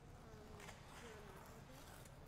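Near silence: faint room tone in an ice arena.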